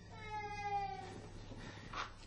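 A faint, single high-pitched vocal call lasting about a second, falling slightly in pitch.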